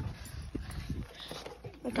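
A few faint, irregular light taps and knocks of movement on the floor, with dogs moving about underfoot.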